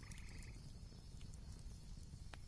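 Near silence: faint low room tone, with a brief faint buzzy trill in the first half second and a few faint ticks.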